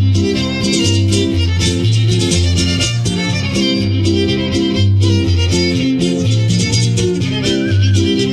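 Live son huasteco (huapango) from a string trio: a fiddle plays the melody over strummed huapanguera and jarana, with a steady, repeating bass pattern.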